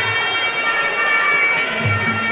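Arena music playing: several sustained high tones held steady over a low, pulsing beat.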